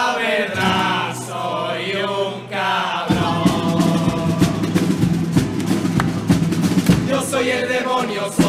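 A chirigota, a male carnival chorus, singing in harmony with guitar accompaniment. About three seconds in, the drums come in with a driving beat under the voices.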